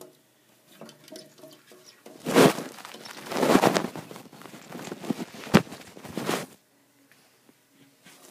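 Loud rustling and scraping close to the microphone, in several surges lasting about four seconds, with a sharp knock near the end; it stops suddenly.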